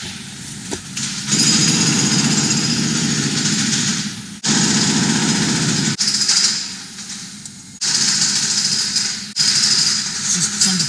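A rapid mechanical rattle amid street noise, heard from inside a car. It breaks off and resumes abruptly every second or two.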